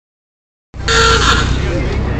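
A vintage car's engine running low and steady as the car rolls slowly by, starting after a moment of silence. Near the start there is a short loud sound with a steady tone over it.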